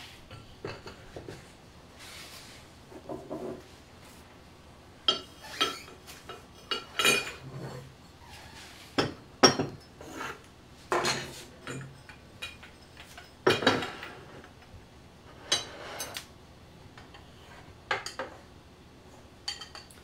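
Glazed stoneware pottery clinking and knocking as pieces are picked up and set down on wooden shelves and against one another. About a dozen short knocks come at irregular intervals, a few of them sharper and louder than the rest.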